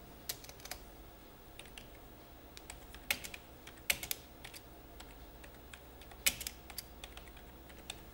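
Computer keyboard typing: faint, irregular key clicks in short runs, with a few sharper keystrokes standing out.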